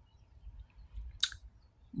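A pause between spoken phrases: faint low room hum, with one brief soft mouth noise from the speaker a little past a second in.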